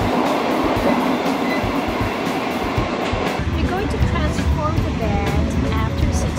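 A passenger train heard from inside its carriage while moving: a steady running rumble and rattle with scattered clicks from the wheels and car. About three seconds in it turns to a deeper, heavier rumble.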